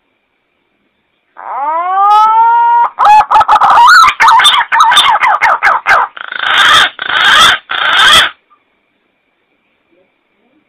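Recorded green pigeon (punai) call played as a hunting lure: a rising whistled note, then a fast run of wavering warbled notes, then three loud, harsh notes, stopping about eight seconds in.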